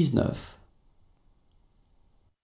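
A voice finishing a French number read aloud, 'sept cent soixante-dix-neuf', which ends about half a second in. Faint room tone follows.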